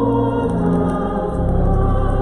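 Choir singing slow, sustained chords with a deep, steady bass beneath, the harmony shifting about half a second and a second and a half in.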